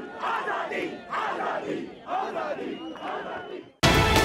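Rally crowd chanting slogans in unison, in loud shouts about once a second. Near the end the chanting cuts off and theme music starts abruptly.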